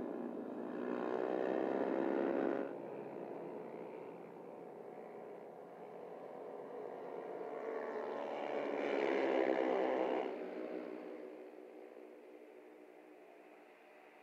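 Engines of small racing motorcycles at high revs as a pack of bikes passes. The sound swells loud about two seconds in and cuts off suddenly, swells again around nine seconds, then fades.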